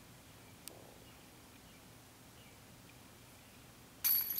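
Near silence with faint outdoor background, broken by one brief faint sharp clink about three quarters of a second in: a putted disc striking the chains of a disc golf basket some distance away.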